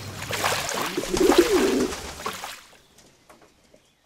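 A dove cooing once, a low warbling call about a second in, over a faint crackling rustle and a low steady hum. All of it fades away in the second half.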